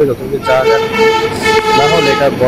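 A horn sounds one steady note for about a second and a half, starting about half a second in, with a man's voice underneath.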